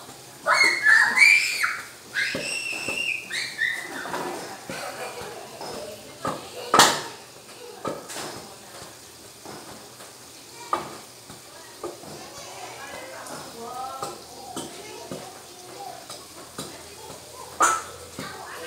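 Wooden pestle pounding boiled bananas in a stainless steel pot, with dull thuds and a few sharper knocks; the loudest comes about seven seconds in. Children's high voices carry in the background, loudest in the first few seconds.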